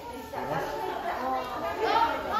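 Chatter of several people's voices, with no other sound standing out.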